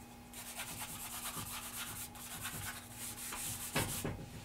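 Charcoal rubbed across drawing paper in many quick, repeated shading strokes, a dry scratchy rubbing. A brief thump near the end.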